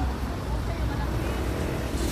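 Busy outdoor market ambience: faint background chatter of shoppers over a steady low rumble.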